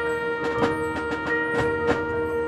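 Marching band music: a held chord sounding steadily, punctuated by about five sharp percussion strikes.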